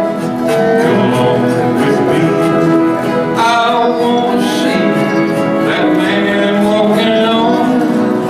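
Acoustic guitars playing a tune together, with several guitars strumming and picking at once.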